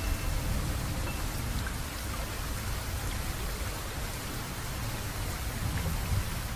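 Steady rain with a low rumble beneath it, as the last held notes of the song die away in the first second.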